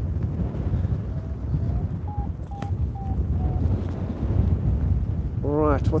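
Airflow buffeting the phone's microphone during paraglider flight, a steady low rumble. Through the middle comes a run of about six short beeps from a flight variometer, stepping up in pitch and then easing slightly down, signalling lift.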